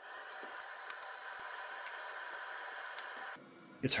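Steady hiss of a laser welder's cooling fan running after the machine is powered up. It cuts off abruptly near the end.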